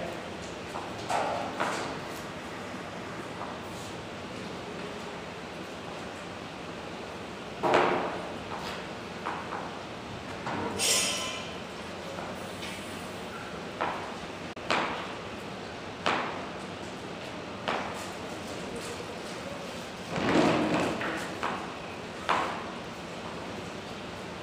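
Kitchen knife cutting a raw potato into batonnet sticks on a plastic chopping board: separate knocks of the blade on the board, a second or two apart, over steady background noise.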